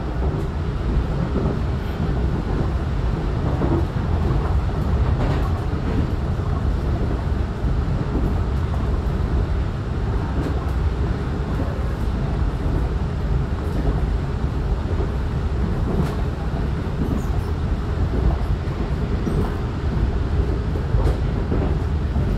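Taiwan Railway EMU900 electric multiple unit running at speed, heard from inside the car: a steady rumble of wheels on rail, with a few faint clicks.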